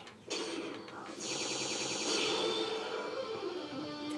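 Electric guitar riffs of an animated episode's intro music, fairly quiet. They start shortly after the beginning and grow brighter about a second in.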